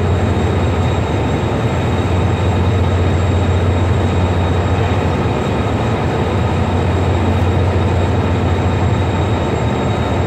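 Railway train noise close by: a steady low hum under an even rushing noise, with no sharp events.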